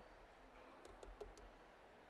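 Near silence with a few faint clicks about a second in, as raspberries are tipped from a plastic measuring cup into a blender jar.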